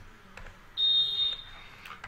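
A single high-pitched electronic beep, one steady tone held for about a second and fading out, starting just before a second in.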